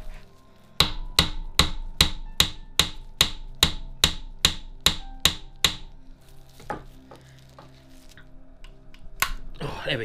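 Hammer blows on the handle of a large crosshead screwdriver seated in a tight screw in a Reliant 750cc engine's crankcase, about two and a half a second for some five seconds, each with a short metallic ring. They shock the seized screw's threads to free it. A few lighter taps follow near the end.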